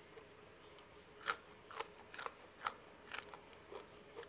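A person chewing raw green onion close to the microphone: crisp crunches about every half second, five or six in all, starting about a second in.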